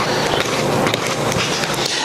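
A spoon scraping and scooping dry powdered red potter's clay across a paper plate into a small measuring cup: a steady gritty scraping with many fine crackles.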